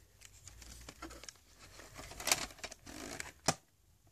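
A plastic VHS clamshell case and its cassette being handled: light rubbing and rustling, with two sharp clicks of plastic about a second apart in the second half.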